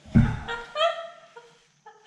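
A person sighs heavily, then makes a short run of high, pitched laughing or squealing vocal notes that stop about three-quarters of the way through.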